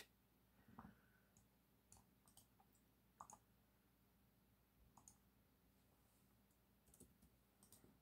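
Near silence broken by faint, irregular clicks, about a dozen, of someone working a computer.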